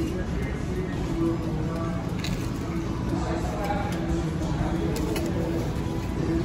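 Restaurant background sound: faint distant voices and music over a steady room hum.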